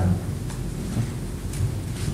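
Steady low rumble of room noise in a pause between speakers, with three faint soft ticks or taps.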